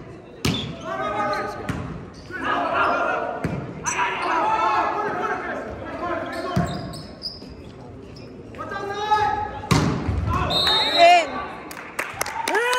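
A volleyball being struck in a rally in a gym hall: a sharp hit as it is served about half a second in, then further hits every few seconds. Players and spectators shout throughout, loudest near the end.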